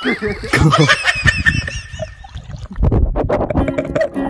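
Water splashing as boys play in a pond, with a run of short, repeated high-pitched cries over it in the first two seconds. Music with plucked-string tones comes in about three seconds in.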